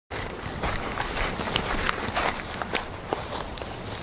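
Footsteps through forest undergrowth: irregular snaps and rustles of plants and twigs underfoot, over a steady background hiss.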